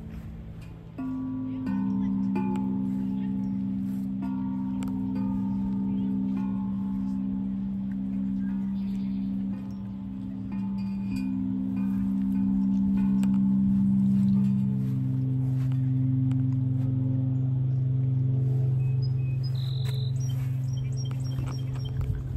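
Large outdoor aluminium chime tubes struck several times with a mallet, their deep tones ringing long and overlapping as new notes enter.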